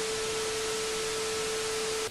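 TV colour-bars test signal: a steady single-pitch sine test tone over a constant hiss of static, the stock 'technical difficulties' sound of a broken-off broadcast.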